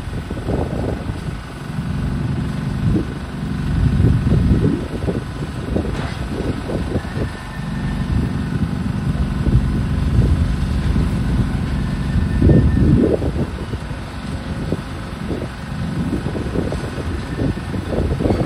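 Tracked demolition excavator's diesel engine running, its note swelling for a few seconds at a time, with gusts of wind rumbling on the microphone.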